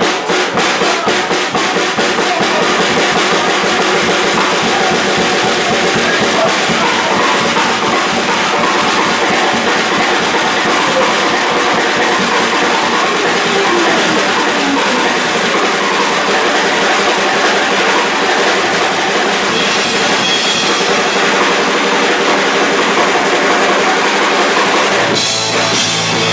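Live rock band playing loud: a Gretsch drum kit beat with electric guitar and bass guitar. The drums stand out alone for the first second or two before the sound fills in, and one long falling slide in pitch runs through the middle.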